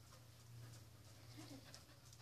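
Near silence: a boxer dog moving on a hard floor, faint ticks of its claws over a steady low hum.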